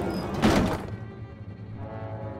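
Cartoon sound effect of a folding wooden attic ladder dropping from the ceiling and landing with one heavy thunk about half a second in, followed by background music with steady held notes.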